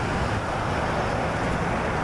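Road traffic noise: a steady rush with a low rumble.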